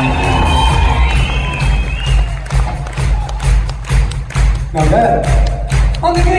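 Live band music played at loud volume, with a steady drum beat and heavy bass. Held synth or guitar notes ring for about the first two seconds, and a voice comes in about five seconds in.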